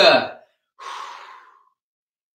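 A man breathing out in one long, audible exhale that fades away, the out-breath of a stretching exercise.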